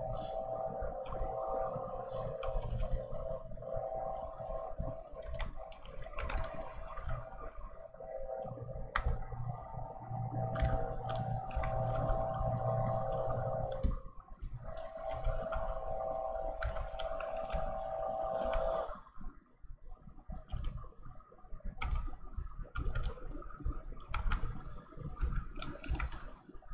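Lawn mower engine outside running with a steady drone, briefly dipping about fourteen seconds in and stopping about nineteen seconds in. Light clicks and taps come from the drawing desk throughout.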